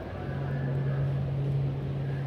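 A steady low hum, starting just after the start and holding at one pitch for about three seconds.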